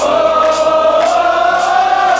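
Power metal band playing live: a long held note with a choir-like sound, rising a little in pitch partway through, over cymbals struck about twice a second.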